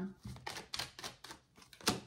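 Tarot cards shuffled by hand: a run of light, rapid clicks and flicks of card stock, with one sharper snap near the end as a card comes off the deck.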